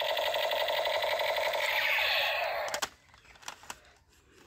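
Battery-powered plastic toy gun playing its electronic firing sound effect, a rapid rattling buzz that lasts nearly three seconds and then cuts off suddenly. A few faint clicks of plastic toys being handled follow.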